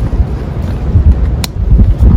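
Wind buffeting the microphone as a loud, uneven low rumble, with one sharp click about one and a half seconds in from handling the roll-top dry bag.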